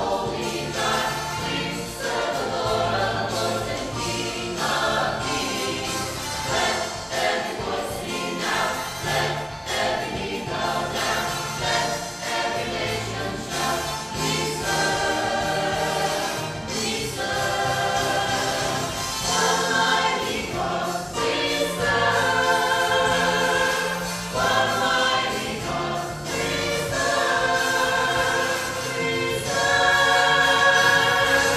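Church choir singing a gospel song in parts, with a live band accompanying them.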